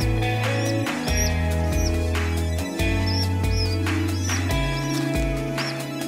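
Background electronic music with a steady kick-drum beat and held bass notes, with short high chirping tones repeating over it.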